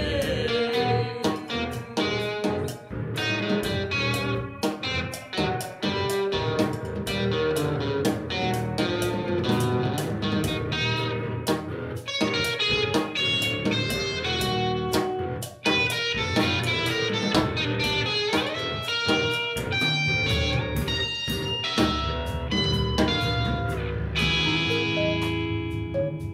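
Live rock band playing an instrumental passage: electric guitar to the fore over bass and a drum kit, with steady drum hits throughout.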